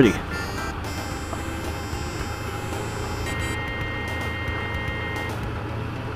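Yamaha FZR600 inline-four engine running steadily as the motorcycle rolls along a gravel road, heard from the rider's helmet camera. A faint steady high tone sounds for about two seconds in the middle.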